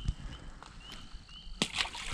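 Loud, sudden water splashes starting about one and a half seconds in, from a largemouth bass striking a topwater frog lure at the pond's surface. Faint short chirps repeat before them.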